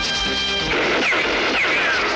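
Film soundtrack: background music with held notes that gives way, a little under a second in, to a dense crashing noise with repeated falling whistles.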